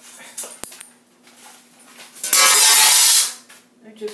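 A sharp click, then about two seconds in a loud, harsh crash-like noise lasting about a second as something breaks.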